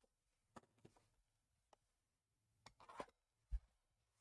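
Mostly near silence with a few faint clicks as a sealed trading-card box is handled, then a short scrape about three seconds in as a knife is drawn across the box, followed by a low thump.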